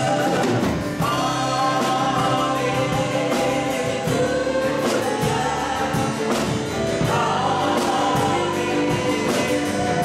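A small mixed group of voices, one man and several women, singing a worship song together into microphones, with a strummed acoustic guitar keeping a steady rhythm underneath.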